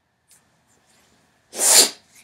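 A man's single short, sharp burst of breath near the end, loud and hissy like a sneeze.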